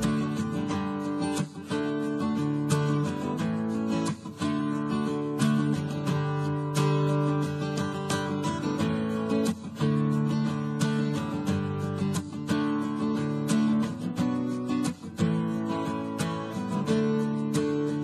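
Background music: an acoustic guitar playing a run of chords, plucked and strummed.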